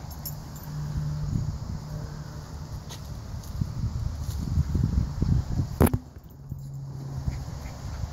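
Wind buffeting the microphone as an uneven low rumble, with one sharp click about six seconds in.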